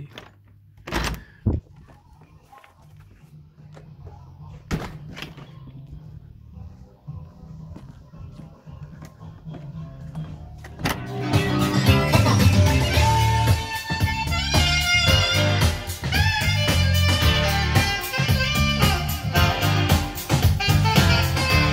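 Guitar music from a hi-fi played at full volume. For the first eleven seconds it is faint and bass-heavy, muffled by the soundproofed walls and glazing of a garden office, with a few thumps in the first five seconds. About eleven seconds in, as the office door opens, it becomes suddenly loud and clear.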